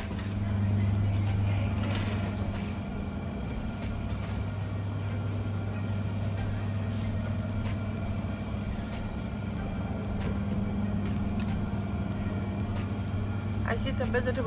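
Steady low hum of supermarket freezer cabinets, louder for the first couple of seconds, with a few faint clicks over it.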